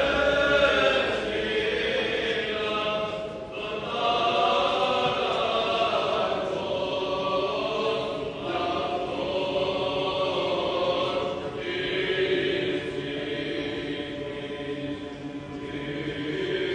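A choir chanting in slow phrases of long held notes, with short breaks between phrases at about three and a half, eight and a half and eleven and a half seconds in.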